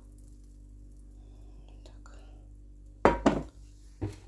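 Butter melting in a hot non-stick frying pan with a faint sizzle over a steady low hum; about three seconds in, a brief loud clatter of metal cookware.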